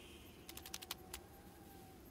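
A quick, irregular run of about seven faint light clicks or taps, starting about half a second in and over within a second; otherwise very quiet.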